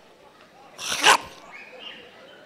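A man imitating a loud snore into a handheld microphone: one noisy breath that swells and cuts off sharply about a second in.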